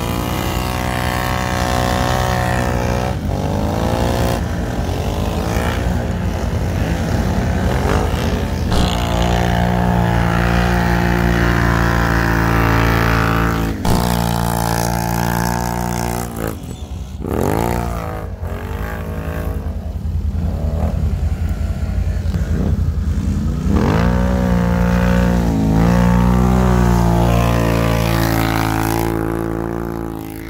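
ATV (quad bike) engine revving hard as it churns up a hill through deep snow, the note rising and falling with the throttle. Just past halfway the revs drop sharply and climb again a couple of times.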